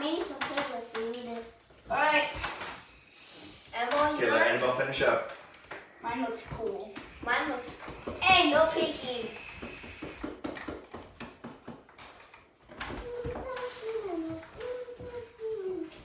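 Children's voices talking in a small room, with a few light taps between the words.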